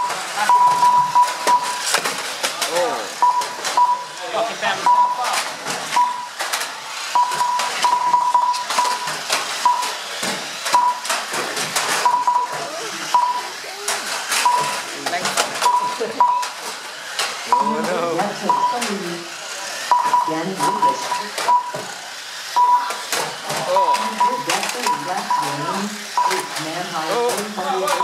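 Short electronic beeps of one pitch at uneven intervals from the race's lap-counting system, as 1/12-scale RC banger cars cross the timing line. Under them is the rapid clatter of the cars knocking into each other and the barrier.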